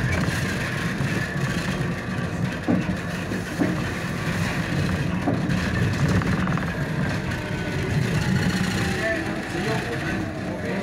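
Steady rumble inside a city bus as it drives along: drivetrain and road noise heard from the passenger cabin. Faint passenger voices come through now and then.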